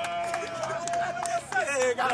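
Men's voices calling out while a team jogs: one long held call for over a second, then short calls that slide up and down near the end.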